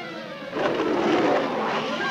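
Cartoon orchestral score playing a falling run, then from about half a second in a louder rushing whoosh.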